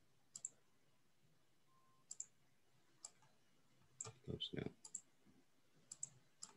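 Faint computer mouse clicks, single and in quick pairs, about one every second.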